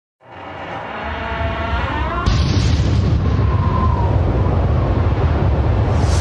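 Cinematic intro sound effects: a tonal swell that rises in pitch for about two seconds, then a sudden boom a little over two seconds in that runs on as a steady deep rumble.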